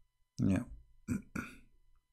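A man's voice saying "yeah", followed by two short voice sounds about a second in.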